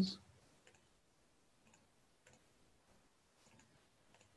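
Faint computer mouse clicks, about half a dozen short ones at irregular intervals, as menu items are picked.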